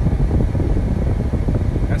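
Steady low rumble of car cabin noise while riding in the car.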